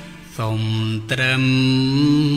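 Music: slow, chant-like singing, with one long held note coming in about half a second in and another about a second in.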